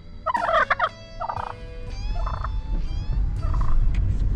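A male wild turkey gobbling close by: one loud rattling gobble about a quarter second in, then three shorter calls. A low rumble grows through the second half.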